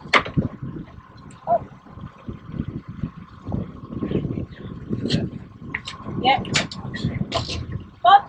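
Boat motor running at trolling speed with a faint steady whine, under uneven wind rumble on the microphone and a few light clicks.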